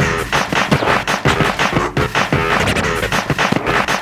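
Turntablism: records worked by hand on two turntables and a mixer, the music chopped and scratched into a fast, stop-start rhythm.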